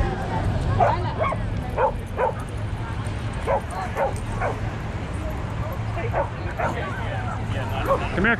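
A dog barking: about ten short barks in groups of two or three, over a steady low rumble.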